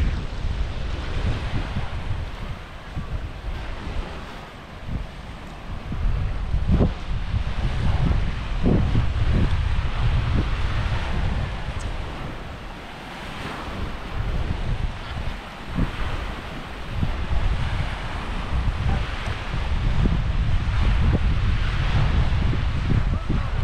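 Wind buffeting the microphone in uneven gusts, over a steady hiss of small waves washing onto a sandy shore.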